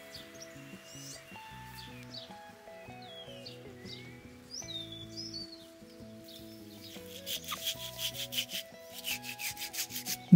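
Pruning saw drawn back and forth across the cut top of a plum trunk, starting about seven seconds in, in quick strokes about three a second. Soft background music plays throughout, with birds chirping in the first half.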